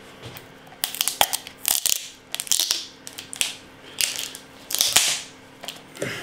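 A plastic SUB Torp mini-keg being handled and worked by hand, giving an irregular run of short crunching, crackling plastic noises.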